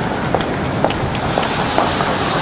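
City street noise, a steady wash of traffic on a wet road, with footsteps about twice a second.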